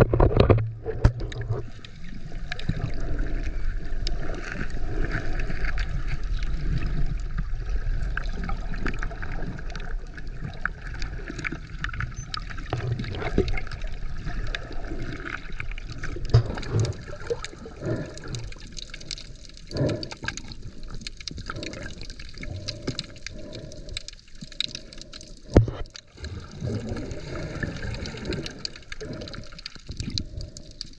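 Muffled water sound recorded underwater: steady moving and gurgling water with many scattered clicks and knocks.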